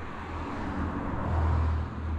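A small van driving past close by on the street, its engine and tyre noise swelling to a peak about one and a half seconds in.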